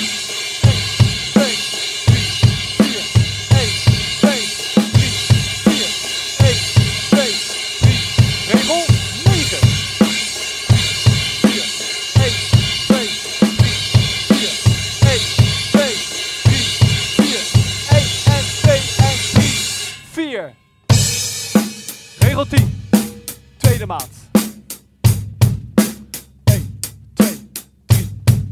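Acoustic drum kit with Sabian HHX cymbals playing a rock groove: eighth notes on a washy cymbal over bass drum and snare, ending about twenty seconds in on an accented hit and a brief stop. After about a second the groove comes back with crisp closed hi-hat eighths, bass drum and snare.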